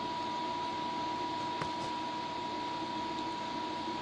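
Steady background hiss with a faint constant whine, and a single faint click about a second and a half in.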